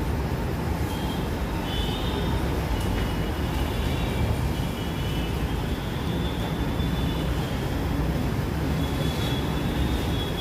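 Steady low rumbling background noise, with faint short high tones coming and going.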